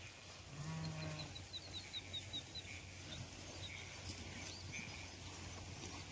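A sheep in a grazing flock bleats once, a low call of about half a second, near the start. A faint quick run of high chirps follows it.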